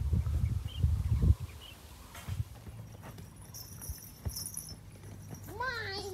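Low buffeting rumble on the microphone, the loudest sound, for the first second and a half, typical of wind or handling on a phone filming outdoors. Near the end comes a short call that rises and then falls in pitch.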